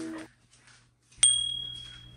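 A single bright bell-like ding about a second in, with a high clear ring that fades out slowly. Before it, the last chord of background music cuts off just after the start, leaving a moment of silence.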